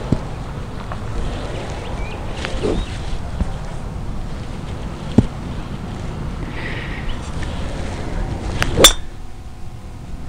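A driver striking a teed golf ball near the end: one sharp crack with a short ring, over steady low background noise.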